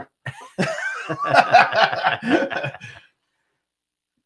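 Men laughing hard together, a burst of overlapping laughter that cuts off suddenly about three seconds in.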